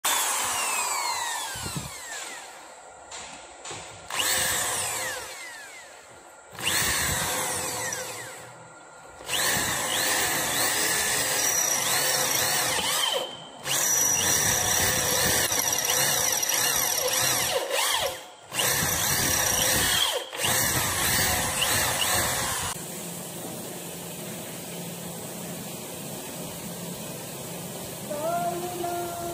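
Corded electric hand drill boring bolt holes through a rusted steel radiator-tank flange, running in repeated bursts with short stops between them and its speed rising and falling. For the last five seconds or so only a steady, quieter background noise remains.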